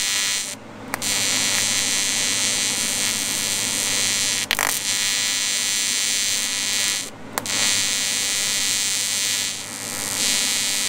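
AC TIG welding arc of a Lincoln Square Wave TIG 200 on aluminum: a steady electric buzz that breaks off briefly twice, about half a second in and about seven seconds in, with a sharp pop midway.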